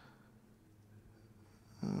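Quiet room tone with a faint low hum over the microphone, then a man's hesitant 'uh' near the end.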